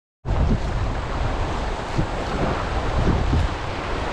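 River water rushing around an inflatable raft, heavily buffeted by wind noise on the action camera's microphone.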